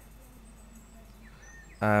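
Quiet background hiss with a few faint, short bird-like chirps, then a man's voice saying a drawn-out "um" near the end.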